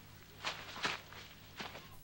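A few soft footsteps, three short steps with the loudest a little under a second in, over a faint steady low hum.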